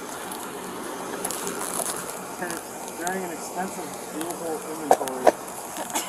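Faint voices talking in the background over a steady outdoor hiss, with two sharp clicks about five seconds in.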